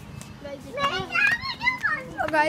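Children's high-pitched voices calling out and chattering in play, starting about half a second in.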